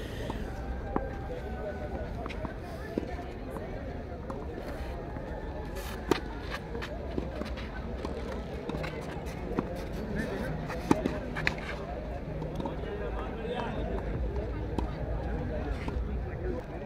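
Tennis ball struck by rackets during a doubles rally on a clay court: a few sharp, separate pops spaced a second or more apart, with faint voices of people around the court.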